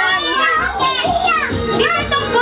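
Several young children talking and calling out over one another, a dense, unbroken chatter of high voices.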